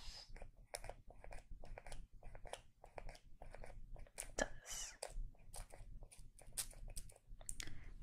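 Close-up clicks and taps of a small plastic pump-spray bottle of OUAI leave-in conditioner being handled and pumped, with a short spray hiss about halfway through.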